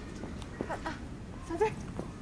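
A baby's brief high-pitched vocal sounds: small squeaks just under a second in and a louder squeak near the end, over low background noise.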